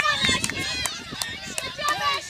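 Several voices calling and shouting at once, none of the words clear, with a few short sharp clicks among them.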